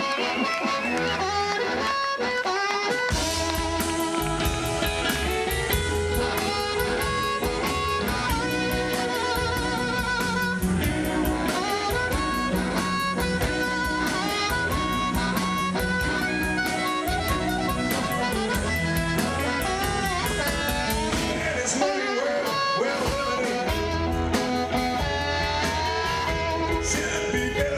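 Live blues band playing: amplified harmonica over electric guitars, upright double bass and drum kit. The bass and drums come in about three seconds in, with a steady beat from then on.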